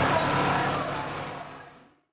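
Mixed background noise of a crowd gathering, without clear music or words, fading out steadily to silence by the end.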